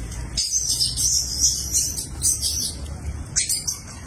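Birds chirping in repeated high clusters over a steady low rumble, with one last short burst of chirps near the end.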